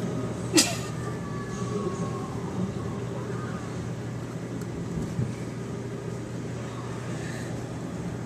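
A steady low engine hum throughout, with one sharp knock about half a second in.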